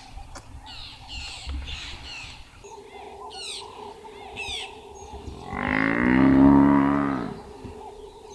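Badly injured Cape buffalo bull giving one long, loud distress bellow about five and a half seconds in, its pitch rising and then falling, while lions attack it. Birds chirp before it.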